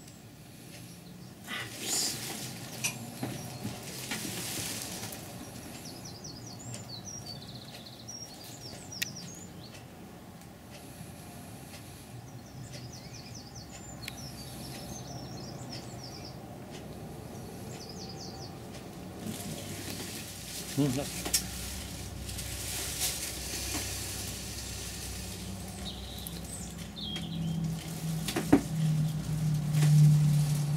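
Bristle brush scrubbing and scraping oil paint across a canvas board in swells of short strokes, with a few light knocks. Small birds chirp faintly now and then, and a low hum rises near the end.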